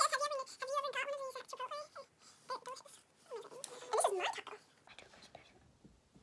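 High-pitched children's voices in short exclamations and talk without clear words, with a pause near the end.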